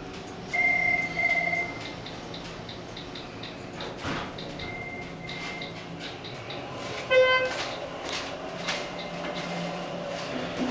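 Signals of a Schindler hydraulic elevator car: a short double electronic beep about half a second in, repeated more faintly a few seconds later, then a louder, buzzier beep about seven seconds in, over a steady low hum.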